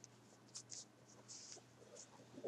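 Near silence, with a few faint, brief rustles from a Barbie doll and its cloth outfit being handled.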